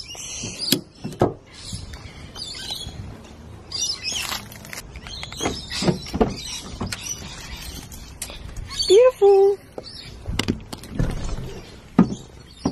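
Birds chirping in the background, with clicks and knocks from handling as the camera moves around the car. About nine seconds in there is a loud, brief call that rises and then holds level.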